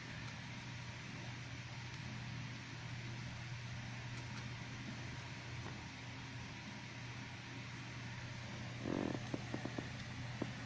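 A small plastic toy figure and its torn blister packaging being handled, with faint rustling over a steady low hum. Near the end come a short burst of crinkling and a quick run of sharp plastic clicks.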